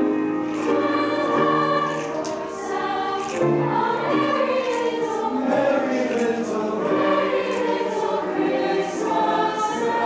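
High school choir singing a Christmas piece in harmony, with many voices holding and moving between notes together.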